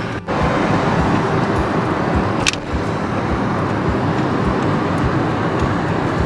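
Steady road and engine noise heard inside a car's cabin moving at highway speed, with a brief sharp click about two and a half seconds in.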